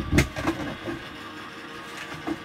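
Gemini electric die-cutting machine and its cutting-plate sandwich, with the thin metal die inside, being handled as the card comes through: one sharp clunk just after the start, then a few lighter knocks, over a faint steady hum.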